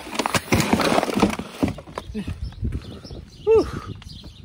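Rustling, rubbing and clicks of a phone being handled, with a short laugh. About three and a half seconds in comes one brief, loud, high-pitched call that rises and falls.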